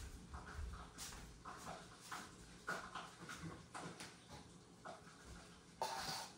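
Faint, scattered clicks, knocks and shuffles of someone moving about and handling small plastic containers, with a low thump near the start and a slightly louder knock just before the end.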